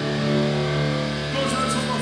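Hardcore band playing live: electric guitar and bass holding chords that ring on steadily, with a couple of cymbal hits about one and a half seconds in.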